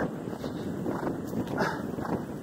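Hounds giving tongue, faint short cries, the clearest near the end, over wind noise on the microphone.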